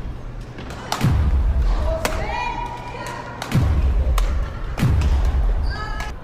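Badminton rally on a wooden sports-hall floor: sharp racket strikes on the shuttlecock and heavy thuds of footwork landing on the floor about one, three and a half and five seconds in. Short rising squeaks of court shoes come about two seconds in and near the end.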